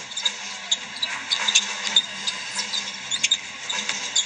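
Basketball game play on a hardwood court: sneakers squeak in short, scattered chirps and the ball bounces, over a steady arena crowd hum.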